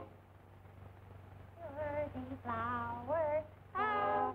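A high cartoon voice singing short, wavering phrases, starting about a second and a half in after a quiet stretch. Behind it runs the steady hiss and low hum of an early sound-film soundtrack.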